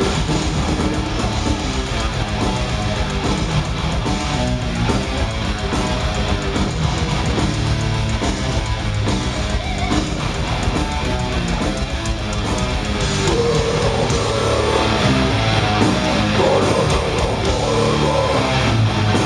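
Death metal band playing live at full volume: distorted electric guitars, bass and fast drumming, heard from among the audience. It gets somewhat louder about two thirds of the way in.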